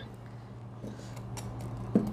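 A few faint light knocks and clicks of a stainless steel manual milk frother and pitcher being handled on a counter, over a low steady hum.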